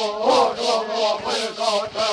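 Kaiapó (Kayapó) Indian chant: voices singing a wavering, repeated line, with a shaken rattle beating about three times a second.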